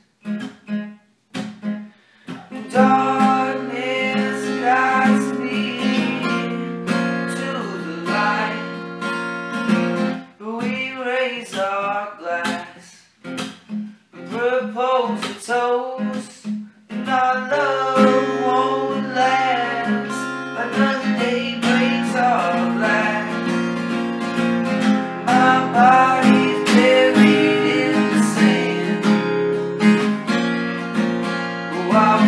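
Acoustic guitar music, strummed chords with picked notes, and a voice singing at times. The playing stops and starts briefly a few times near the start, then runs on steadily.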